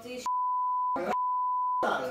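Censor bleep: a single steady tone laid over the talk, which is wiped out beneath it, in two stretches broken by a brief snatch of voice about a second in.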